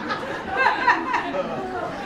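Audience chatter: several voices murmuring together as the laughter at a joke dies down.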